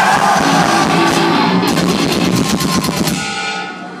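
Heavy metal band playing live: a short, loud burst of guitars and drums with rapid drum hits in the second half, cutting off about three seconds in and ringing out.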